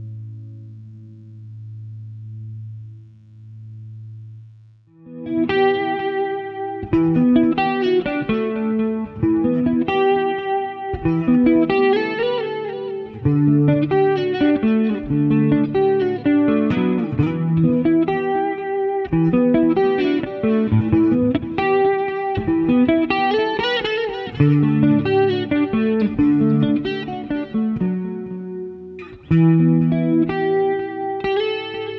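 Harley Benton semi-hollow electric guitar being played: a low held tone swells and fades for the first few seconds, then a melodic piece of picked single notes and chords starts about five seconds in and carries on.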